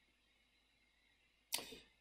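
Near silence, then about one and a half seconds in a short, sharp burst of noise that fades out within about a third of a second.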